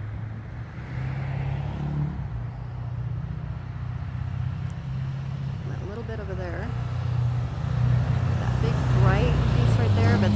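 A motor vehicle's engine running close by, a low hum that shifts up and down in pitch and grows louder toward the end, with people's voices in the background.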